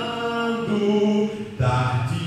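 A man singing a slow chant-like melody into a microphone, holding each note for about half a second, with a short break about one and a half seconds in.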